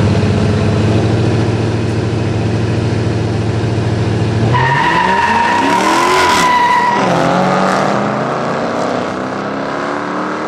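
A Dodge Charger and a Chevrolet Camaro held at steady revs side by side at the start line. About four and a half seconds in they launch: tyres squeal for two or three seconds while the engines rev up and drop back through gear changes as the cars pull away.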